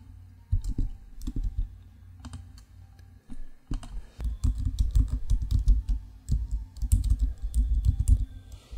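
Computer keyboard typing: a few scattered key clicks at first, then fast, continuous typing from a little under four seconds in.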